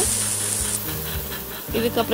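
Chopped onions sizzling in hot oil, an even hiss that is loudest for the first second after they hit the oil, then settles and fades to a softer frying sizzle.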